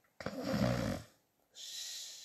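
A woman snoring once, a rough snore about a second long. Then a hissing breath is let out through bared teeth, fading away.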